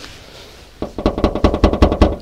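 Closed bonnet of a Hyundai Elantra rattling against its latch as it is pushed down by hand: a quick run of light knocks starting almost a second in. The bonnet moves because its lock is not adjusted.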